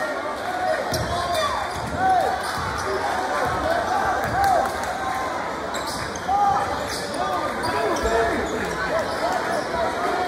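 Basketball game play on a hardwood gym floor: a basketball dribbled with thumps, and many short sneaker squeaks as players cut and stop, over crowd voices.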